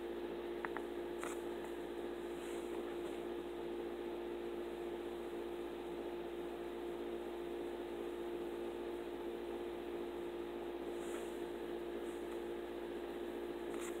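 Steady room hum, a constant low tone that does not change, with a couple of faint clicks about a second in.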